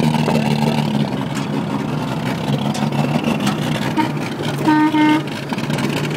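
1951 International's engine with a three-quarter race cam running under load as the truck is driven, heard from inside the cab as a steady low drone with rattling. A short flat-pitched toot sounds about five seconds in.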